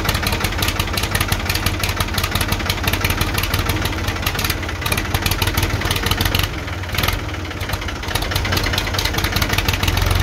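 Ford 201 3.3-litre three-cylinder diesel engine running rough just after starting, with a fast, uneven clatter of firing pulses. The roughness was later improved by adjusting the injection timing.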